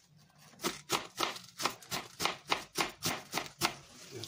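Kitchen knife chopping a head of cabbage on a plastic cutting board: a quick, even run of sharp cuts, about four a second, starting about half a second in.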